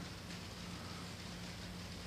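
Quiet room tone: a steady, even hiss with a faint low hum and no distinct handling sounds.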